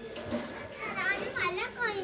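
High-pitched children's voices talking and calling in the background, unclear words, mostly in the second half.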